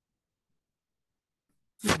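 Silence, then a short sharp vocal sound just before the end as the narrator starts speaking again.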